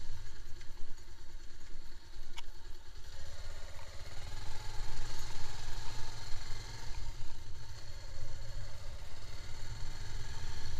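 Sport motorcycle's engine running at low speed on a rough dirt track, over a steady low rumble of wind and road on the microphone, with a sharp knock about two and a half seconds in.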